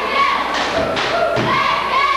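A couple of dull thuds in a wrestling ring, about half a second and a second in, as wrestlers grapple on the mat. Crowd voices are shouting throughout.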